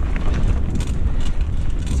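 Giant Talon mountain bike rolling along a dirt trail: loud low rumble of the tyres on the rough ground mixed with wind on the camera microphone, with scattered small clicks and rattles from the bike.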